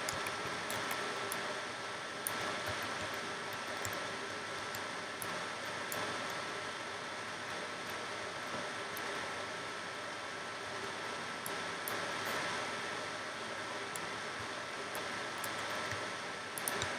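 Steady background hiss from the recording microphone and room, with a faint steady high whine and scattered faint ticks.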